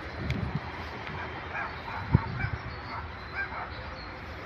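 A dog barking faintly in a run of short, repeated barks. A single sharp thump a little after two seconds in is the loudest sound.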